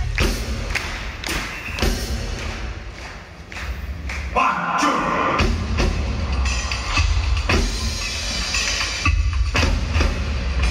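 Live band music played loud over a concert PA: a heavy bass beat with regular drum hits. It dips briefly about three seconds in, a held tone sounds for about a second, and then the beat comes back in full.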